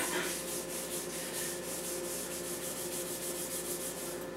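A whiteboard eraser scrubbed quickly back and forth across a whiteboard, a fast, even run of rubbing strokes.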